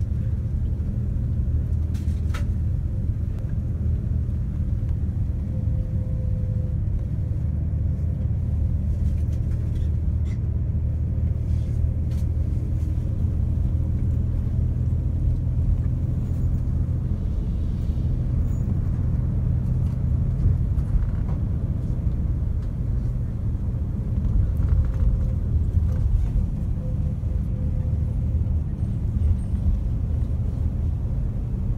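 Steady low rumble of engine and road noise heard from inside a moving vehicle as it drives along.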